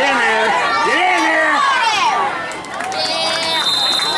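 Spectators shouting and yelling. About three seconds in, a referee's whistle blows one long, high-pitched blast.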